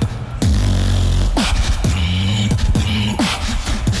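A beatboxer performing a solo showcase into a handheld microphone. Deep bass sounds drop in pitch about once a second, with sharp snare and hi-hat sounds between them in a steady groove.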